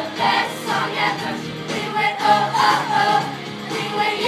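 A children's show choir singing a pop song together over instrumental music.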